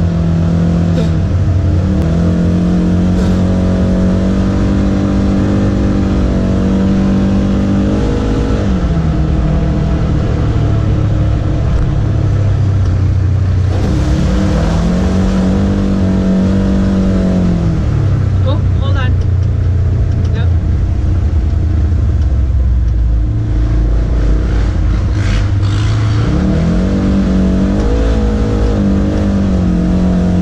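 Polaris General side-by-side's engine running as it drives a dirt trail, its pitch climbing and dropping back several times as the throttle is opened and eased.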